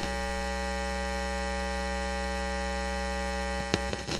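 Steady electrical mains hum, buzzy with many overtones and unchanging in level. A single sharp click sounds near the end.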